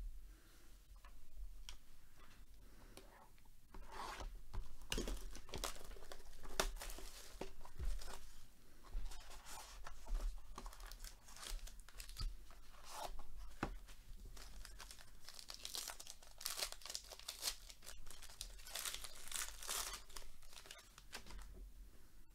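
A sealed trading card box and its gold foil pack being torn open by hand: irregular ripping and crinkling of the wrapping, heaviest in several bursts through the middle and latter part.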